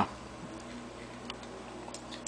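Quiet room tone: a steady low hum with a few faint, irregular ticks.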